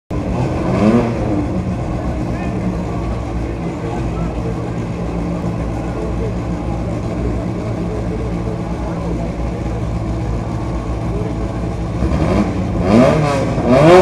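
Škoda 130RS rally car's four-cylinder engine idling at the start line, with one short throttle blip about a second in. Near the end come a quick run of louder rev blips as the car readies to launch.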